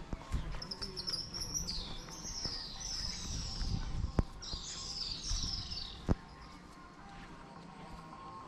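Small birds chirping in short, high, warbling bursts, which die away about six seconds in. Three sharp knocks sound along the way.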